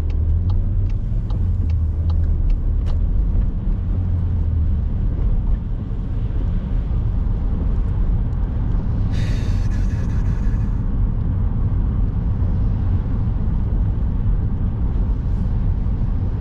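Inside a car's cabin: steady engine and tyre rumble as the car pulls away from a junction and drives along a wet, slushy road, heavier for the first few seconds. A brief hiss of spray about nine seconds in, lasting about two seconds.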